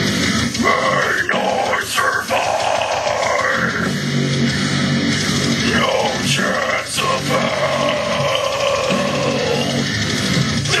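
Deathcore song with heavy distorted guitars and drums, played as a backing track under harsh growled and screamed vocals delivered into a handheld microphone.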